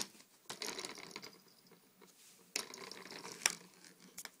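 A marble rattling and rolling inside a plastic sand-wheel toy, in two bouts of clatter about a second long each, with a sharp click at the start and a louder clack near the end.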